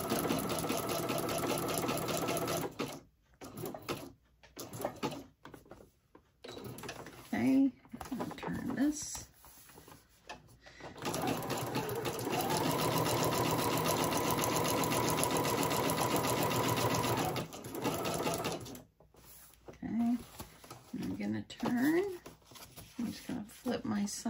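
Computerised sewing machine stitching through paper in two runs: it runs steadily for about three seconds and stops, then after a pause with scattered handling sounds it runs again for about eight seconds and stops.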